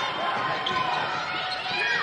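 Basketball bouncing on a hardwood court during play, with voices in the background.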